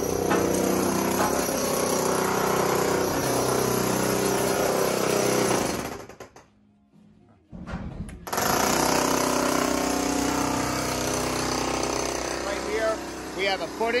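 Corded electric demolition hammer (handheld jackhammer) chiselling into a concrete basement floor slab, breaking it out for a structural footing. It runs continuously, stops for about a second and a half just past the middle, then starts again.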